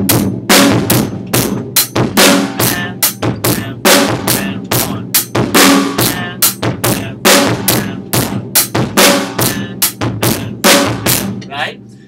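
Acoustic drum kit playing a steady repeating rock groove on bass drum and snare, the same beat over and over. It stops shortly before the end.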